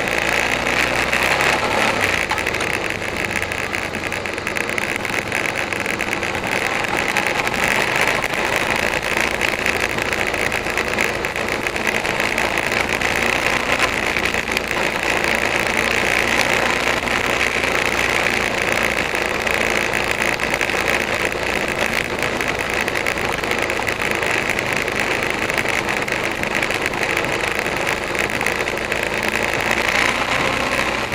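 Suzuki V-Strom motorcycle being ridden at a steady town speed, recorded by a camera on the bike: the engine runs under a steady rush of wind and road noise that does not let up.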